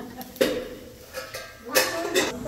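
Kitchen dishes and utensils being handled: a sharp knock about half a second in and a louder clatter near the end.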